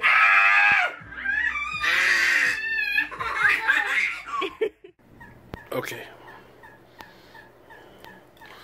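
A baby's belly laughs trading with an adult man's loud, playful laughing and shouting, in bursts. About five seconds in, this cuts off and gives way to much quieter sound.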